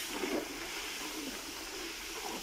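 Sugarcane juice boiling hard in a large open iron pan (karahi) as it is cooked down to jaggery: a steady hiss of bubbling and steam.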